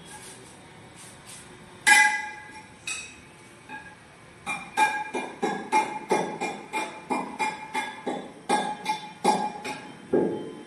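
Sharp ringing clinks of a hard object being struck: one loud clink about two seconds in, then a quick, even run of about three clinks a second through the second half, each with the same bell-like ring.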